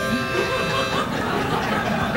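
A harmonica played by mouth, holding a sustained chord as mock suspense music, mixed with laughter and voices.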